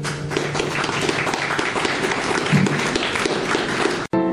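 Audience applauding, starting just as a strummed acoustic guitar chord stops.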